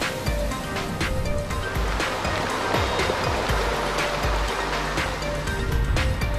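Background music with a steady beat over sea waves washing in across a rocky shore. The wash swells about halfway through.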